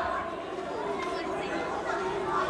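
A pause in a man's lecture into microphones: faint background chatter over the room tone of a hall.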